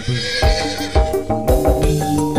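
Live dangdut band playing an instrumental passage: keyboard chords and melody over electric guitar and steady low drum beats about twice a second. A brief wavering, whinny-like high sound opens the passage.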